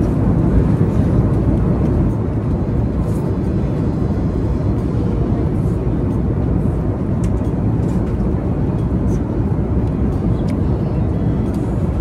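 Steady low rumble of jet airliner cabin noise in flight, with a few faint clicks.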